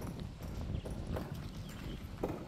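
Footsteps walking at an easy pace, about two steps a second.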